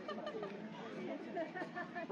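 Indistinct chatter of several people talking at a distance, no single voice clear.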